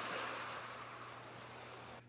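Ocean surf ambience: a steady wash of waves that slowly fades out, with a faint low hum beneath.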